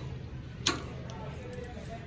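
Wire shopping cart being pushed along a store aisle, with one sharp clunk about two-thirds of a second in over a steady low hum.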